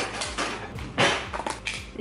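A metal spoon scooping cocoa powder from a canister: a few short scrapes and knocks, the loudest about a second in.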